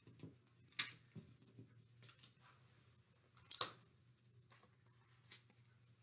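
Cutout footprints being pulled off a whiteboard and handled: a few light taps and rustles, the loudest tap about three and a half seconds in.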